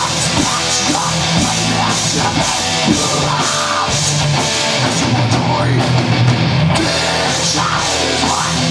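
Live heavy metal band playing loud and steady: distorted electric guitars and bass over a drum kit with crashing cymbals.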